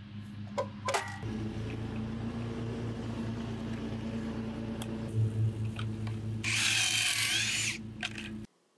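Cordless drill running with a steady hum, boring pocket holes through a pocket-hole jig into a 2x4; for about a second near the end it turns louder and harsher as the bit cuts into the wood. A couple of clicks come in the first second.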